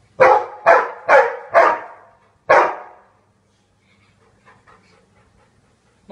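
A dog barking five times: four barks about half a second apart, then one more about a second later.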